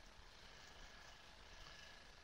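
Near silence: faint room tone from a headset microphone.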